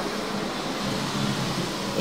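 Steady background noise, an even hiss-like hum with no distinct events, in a pause between speech.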